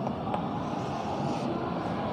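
Chalk strokes scraping on a blackboard as lines are drawn, with one light tap of chalk on the board shortly after the start, over a steady background hum.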